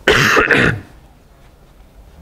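A man clears his throat loudly, in two quick bursts within the first second.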